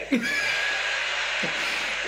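Live theater audience laughing and applauding, a steady wash of crowd noise that rises sharply just after the start.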